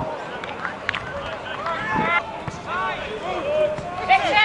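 Shouts and calls from players and spectators at a football match, with a couple of short sharp knocks.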